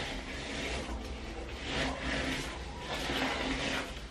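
Detangling brush dragged through wet, conditioned hair in repeated strokes, a soft swish roughly every half second to a second, over a low steady hum.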